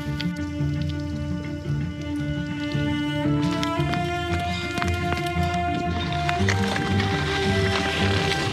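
Background music: sustained chords over a steady low beat, the chord changing about three seconds in and again past six seconds.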